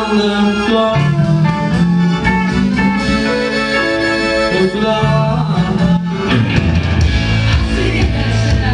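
A live rock band playing with a lead singer, keyboard, guitar, bass and drums. The low end and drums come in heavier about six seconds in.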